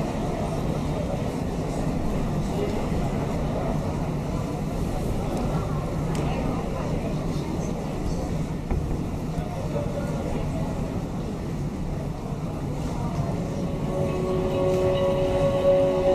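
Steady room noise of a large sports hall with a low murmur of voices. Near the end, the routine's music starts with long held notes.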